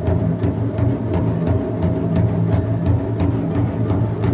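Japanese taiko drums played by an ensemble: a deep, continuous booming with sharp strikes in a steady beat of about three a second.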